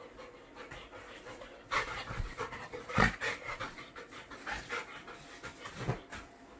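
Golden retriever panting hard in quick, repeated breaths, starting about two seconds in, with one louder thump near the middle.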